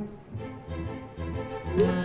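Background music with an even bass pulse. Near the end, a bright ringing notification chime from a smartphone as a connecting-flight alert arrives.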